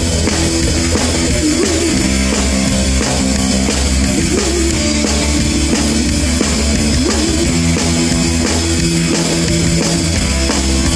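Live rock band playing an instrumental passage: a drum kit keeping a steady beat under amplified guitar, with a few bent notes.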